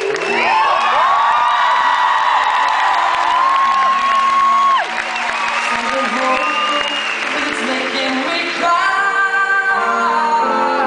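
Male singer's wordless vocal solo, sung into hands cupped around the microphone: long held high notes that slide up and down, with a short break about five seconds in. Steady accompanying chords sit underneath.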